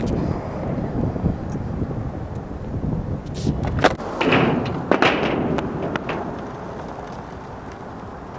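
Skateboard wheels rolling over rough asphalt with a steady low rumble, broken by sharp clacks of the board a little under four seconds in and again about five seconds in; the rumble fades after about six seconds.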